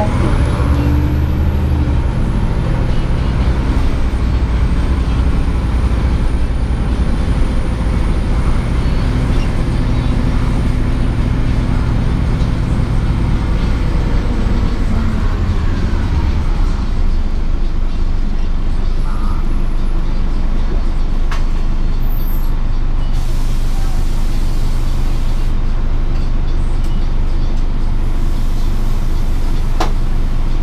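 Cabin sound of a 2004 Gillig Advantage transit bus under way: a steady low diesel engine and drivetrain drone with a high whine over it, both falling in pitch about halfway through as the bus slows. A short hiss of air from the air brakes comes about three-quarters of the way through.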